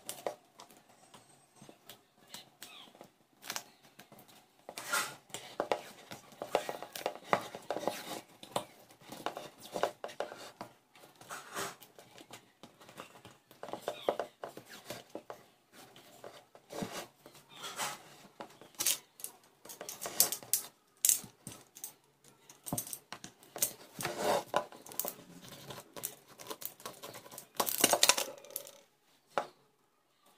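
Irregular clicks, taps and rustles of hands handling a small plastic flower pot and craft materials on a table, with a louder cluster of knocks a little before the end.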